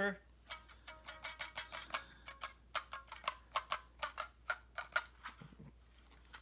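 Small plastic toy guitar being fiddled with and played: a quick, uneven run of faint clicks and plucks. Some of those in the first couple of seconds carry short, thin tones.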